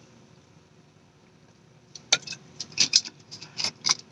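Drinking from a plastic sports-drink bottle: a quiet first half, then several short, irregular clicks and taps from about two seconds in as the bottle is lowered and handled.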